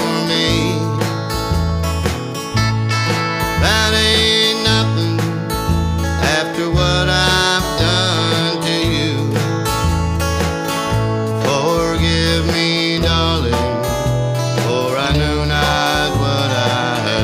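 Country band playing: strummed acoustic guitar over a bass line stepping between two low notes, with a lead line on top that slides between notes.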